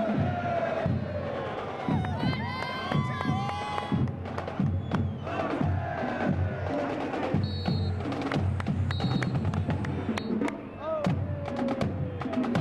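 Stadium crowd cheering over marching-band drumming, with sharp drum hits coming thick and fast throughout.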